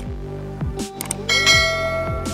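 Outro music with a steady beat, overlaid by subscribe-animation sound effects: a short mouse-click sound near the start and another about a second in, then a bright bell chime about a second and a half in, the notification-bell ding.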